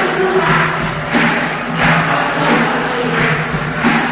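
Live band music: a sustained low note under a steady beat that pulses about every two-thirds of a second.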